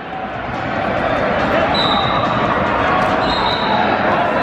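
Reverberant hubbub of spectators and coaches shouting and talking in a large arena hall, swelling in loudness over the first second. Two short high steady tones sound near the middle.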